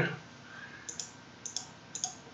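Computer mouse button clicking three times, each click a quick pair of ticks as the button is pressed and released.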